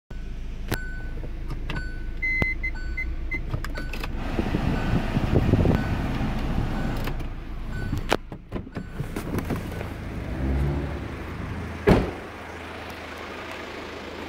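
Inside a 2017 Hyundai Tucson: a string of short electronic chime beeps in the first few seconds, then the car's engine and handling noise with scattered clicks, and one sharp knock about twelve seconds in.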